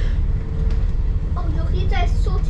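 Double-decker bus heard from on board while driving: a steady low rumble of engine and road noise with a faint steady hum above it. Background passenger voices come in near the end.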